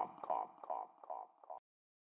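Tail of the podcast's outro jingle: a short sound repeating about every 0.4 s and fading with each repeat, an echo dying away, then cut off to silence about a second and a half in.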